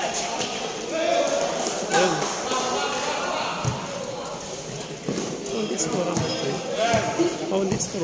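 A basketball bouncing on a concrete court, a few separate thuds in the second half, over spectators' voices.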